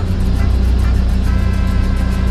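Engine of a manual-transmission truck running steadily at low revs, heard inside the cab, as the truck creeps off on the clutch alone before the accelerator is pressed. Background music plays over it.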